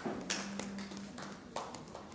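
A few scattered, separate hand claps as the applause thins out, with a short steady low hum in the first half.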